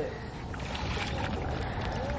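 Steady outdoor background noise with a low wind rumble on the microphone and a few faint ticks.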